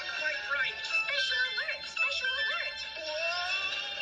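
Cartoon soundtrack playing from a television's speaker: upbeat music with a wavering, sung-sounding melody line.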